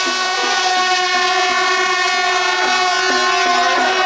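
Temple procession music: a shrill reed horn holds one long note while a lower melody moves underneath in short steps.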